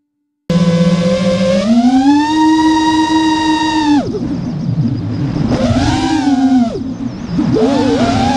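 FPV freestyle quadcopter's brushless motors whining, heard through the onboard camera. The sound starts abruptly half a second in, then the pitch climbs as the throttle is punched, holds high and drops away near the middle. It swells and falls twice more toward the end.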